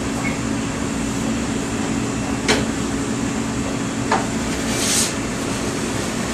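Steady hum of restaurant kitchen machinery, with a low even tone running through it. It is broken by two light clicks, about two and a half and four seconds in, and a brief hiss near the end.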